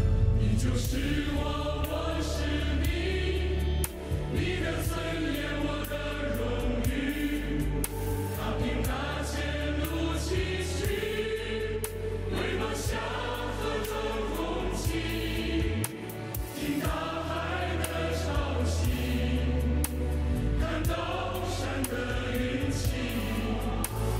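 A choir singing a song over full instrumental backing, with a sustained bass and regular percussion hits.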